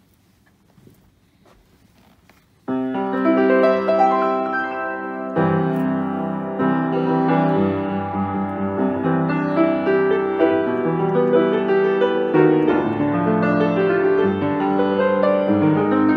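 Hallet, Davis 5'7" acoustic grand piano played by hand. It starts suddenly with full chords about three seconds in and carries on as a continuous passage, with a fresh heavy chord a couple of seconds later.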